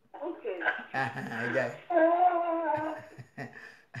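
Speech: a person's voice talking, with pitch rising and falling, fading out about three seconds in.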